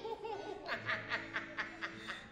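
Laughter: a short run of quick chuckling pulses, several a second, lasting about a second from around the middle, over a faint low steady hum.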